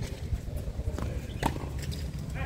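Tennis ball strikes during a rally on a hard court: two sharp pops about half a second apart, the second louder, over a low steady rumble.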